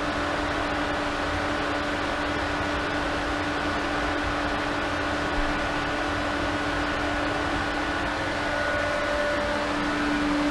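1.5-horsepower variable-speed pool pump running at its maximum speed of 3,450 RPM: a steady hum with a constant tone over it.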